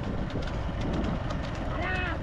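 Wooden bullock cart clattering along a dirt road behind a pair of bulls, its boards and wheels rattling over a low rumble. A man shouts briefly near the end.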